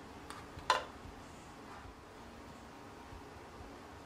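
Quiet handling of brownie pieces on a wire cooling rack: one sharp click a little under a second in, with a couple of fainter ticks, over a steady low hiss.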